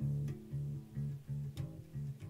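Ibanez Musician four-string electric bass being plucked with the fingers: a run of short, evenly spaced low notes, a little over two a second.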